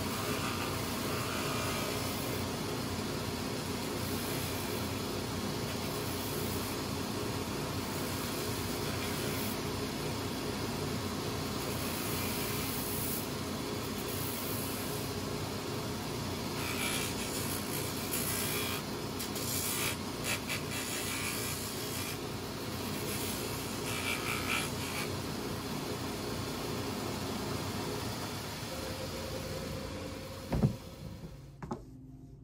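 GP-Combi shoe finishing machine running with a steady motor hum, with several short bursts of rubbing in the middle stretch as a boot is pressed against its spinning wheels.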